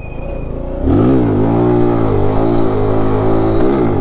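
A 125cc single-cylinder mini bike engine, quiet for the first second, then revved hard to high rpm as the front wheel comes up in a wheelie. It holds the high revs with small rises and dips for about three seconds, and the revs fall away near the end as the throttle closes.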